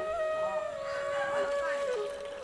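Background song in which a voice holds one long steady note, with the melody moving on near the end.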